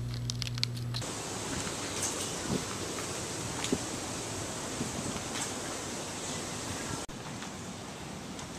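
A few sharp clicks as a cat claws and bites a sisal scratching post, over a low steady hum. About a second in, this gives way to a steady outdoor hiss with scattered soft taps, which drops a little near the end.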